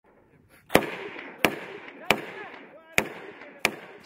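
Five single rifle shots about two-thirds of a second to a second apart, each a sharp crack followed by a decaying echo.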